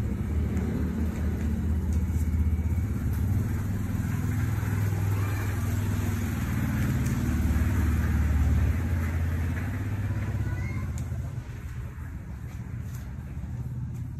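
A steady low engine rumble, like a motor vehicle running close by, that drops off about eleven seconds in.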